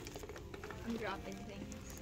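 Soft handling sounds of plastic-wrapped craft packages being moved on a wire store shelf: faint rustling and a few light ticks, with a faint voice about a second in.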